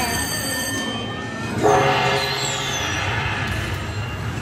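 Video slot machine's electronic bonus sounds: ringing chime tones, then about one and a half seconds in a louder jingle with a falling swoop. They announce that the Hold & Spin bonus feature has triggered.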